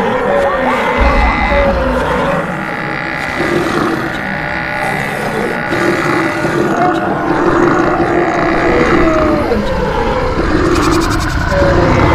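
Stampede sound effect: a herd of animals calling over one another, with long lowing calls, above a continuous rumble of running hooves.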